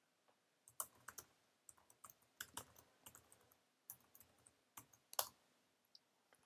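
Faint typing on a computer keyboard: irregular keystrokes and clicks, several a second, stopping about a second before the end.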